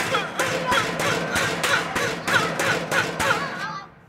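A broom beating again and again on a metal trash can, about three blows a second, each with a short cry, over cartoon music. The beating stops shortly before the end.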